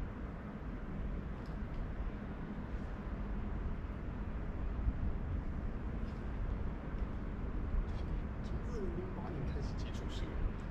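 Steady low rumbling background noise with no single clear source. A short faint vocal sound wavers briefly near the end.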